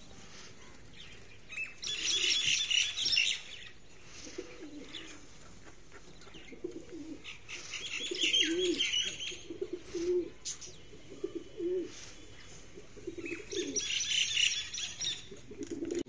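Domestic pigeons cooing, a string of short low coos repeating through the clip, with three bursts of higher-pitched bird sound about two, eight and fourteen seconds in.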